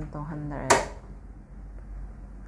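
A woman's voice, then one sharp click about two-thirds of a second in, likely a button being pressed on a Samsung front-load washing machine's control panel. The machine gives no beep because its key sound is switched off.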